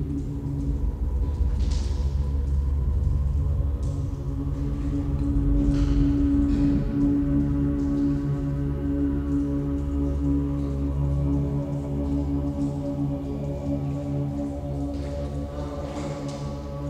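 Experimental drone music: several low, steady tones held together without beat or rhythm, swelling a little around the middle, with a few brief faint hisses.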